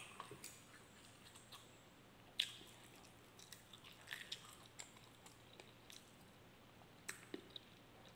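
Faint chewing of a mouthful of food: a few soft, short mouth clicks scattered through near silence, the most distinct about two and a half seconds in and a small cluster around four seconds.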